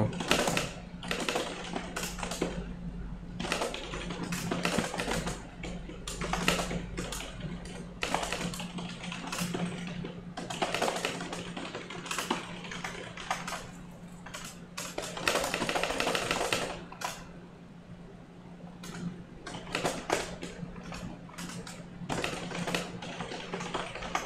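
Computer keyboard typing in fast runs of keystrokes, with a short lull about two-thirds of the way through. A steady low hum sits underneath.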